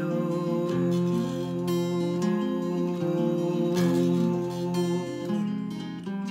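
Acoustic guitar with a capo, strummed chords ringing on between fresh strokes about once a second, played solo with no voice.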